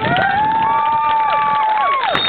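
Children cheering and yelling, with high-pitched yells that rise and are held for over a second before falling off near the end.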